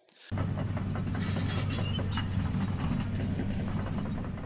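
A steady low engine rumble, like a heavy engine idling, starting a moment after a brief silence.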